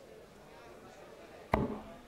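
A steel-tip dart striking a Winmau bristle dartboard once, about a second and a half in: a sharp thud with a brief ring.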